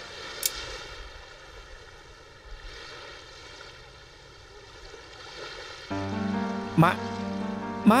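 Soft drama background music, then a held musical chord that swells in about six seconds in. Near the end come two short, sharply rising voice calls about a second apart.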